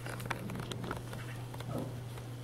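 Soft rustling and scattered light clicks close to the microphone as it brushes a long-haired dog's fur, over a steady low hum.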